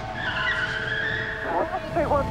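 Street noise with a high-pitched squeal that holds for about a second and a half, pitch sagging slightly, then a short burst of voice near the end.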